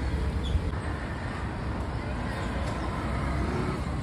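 Road traffic noise: a steady low rumble of vehicles, heaviest in the first half second.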